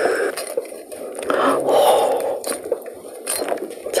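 A kitchen knife cutting a tentacle off a whole cooked octopus: wet cutting sounds with a few short, sharp clicks.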